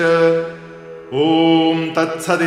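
A man chanting Sanskrit verse in a steady recitation tone. The held last syllable of a verse fades out, and about a second in he begins a long held 'Om' that opens the chapter's closing formula.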